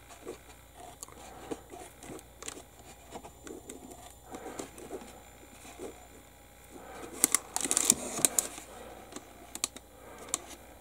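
Small clicks, taps and scrapes of a metal hobby scalpel and a nitrile-gloved hand working on a plastic model part, with a denser flurry of sharp clicks about seven seconds in.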